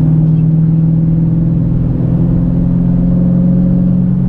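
Dodge Challenger 6.4's HEMI V8 exhaust, through Flowmaster Super 10 mufflers, heard from inside the cabin at highway cruising speed. It is a steady low drone with road noise under it.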